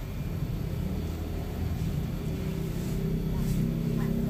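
Straight razor scraping stubble on the chin and neck, with faint strokes near the end, over a steady low rumble.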